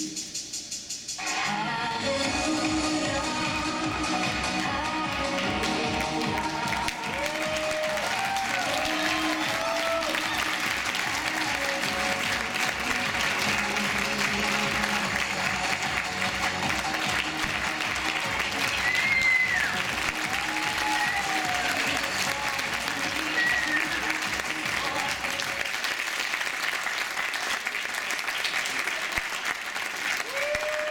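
Music ends about a second in, and an audience claps at length, with a few cheers and whoops; the applause thins out near the end.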